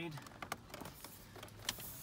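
Plastic dash trim bezel being worked into place around a car stereo, a few light clicks and taps of plastic against plastic.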